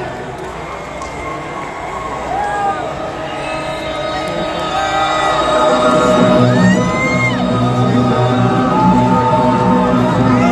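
Arena crowd cheering, with whoops and whistles, over a held droning note. About five and a half seconds in, a low-pitched music intro comes in and grows louder as the band starts the song.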